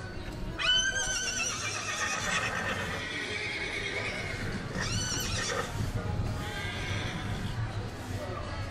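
A horse whinnying three times: a long quavering call starting about half a second in, then two shorter ones around five and six seconds in.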